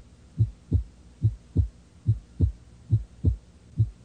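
A heartbeat: steady lub-dub pairs of low, dull thumps, about 70 beats a minute.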